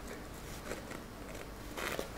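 Quiet room tone with a few faint small clicks and rustles, and a short, brighter rustle near the end.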